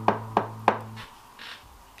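Knuckles rapping on a door: three quick knocks in the first second, over a low steady tone that cuts off about halfway.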